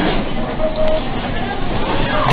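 Loud, steady noise of a building shaking in a strong earthquake, with indistinct voices of people hurrying out of the room.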